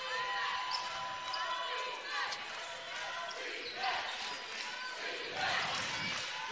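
A basketball being dribbled on a hardwood court, with a steady hum of arena noise and voices underneath.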